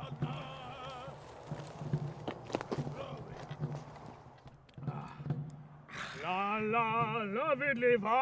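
Faint scattered clicks and rustles for the first six seconds. Then, about six seconds in, a man starts singing a wavering "la la la" tune, loudly and in a mock-Russian style.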